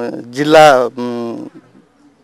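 A man's voice speaking in drawn-out, held syllables, then pausing about a second and a half in.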